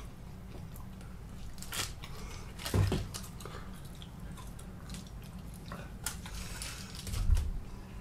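Close-up eating sounds of Buffalo chicken wings being chewed and pulled apart by hand: wet smacks, small crunches and clicks. Two louder low thumps come about three seconds in and near the end.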